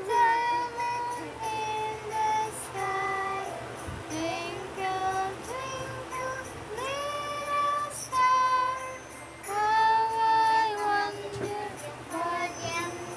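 A song sung in a high, child-like voice with held notes that slide up into pitch, over a steady musical accompaniment.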